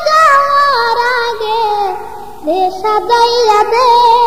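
A solo singing voice in a Bengali Islamic song (gojol), drawing out a long ornamented line with vibrato that sinks in pitch over the first two seconds, then, after a brief drop, holding a steady note with vibrato.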